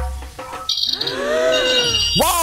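Electronic sound effects from a spin-the-wheel game on a smartphone. High beeping tones start about two-thirds of a second in, joined by a rising-and-falling tonal glide as the wheel comes to rest.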